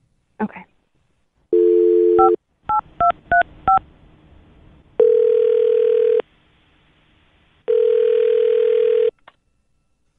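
A telephone call being placed: a short dial tone, then five quick touch-tone (DTMF) key beeps as the number is dialled, then two rings of ringback tone while the line rings at the other end.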